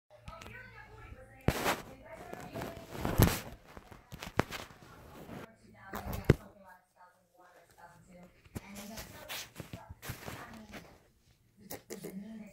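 Handling noise from a phone camera being moved around: a string of sharp knocks and bumps, the loudest a little after one second and around three and six seconds in, with faint murmured voices between them.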